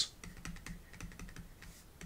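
Stylus tapping and scratching on a pen tablet surface as words are handwritten: a string of light, irregular clicks.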